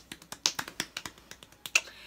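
A quick, uneven run of small, sharp clicks, roughly ten a second.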